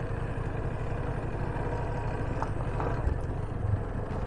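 Yamaha FZ25's single-cylinder motorcycle engine running steadily and low-pitched as the bike rolls slowly over rough dirt.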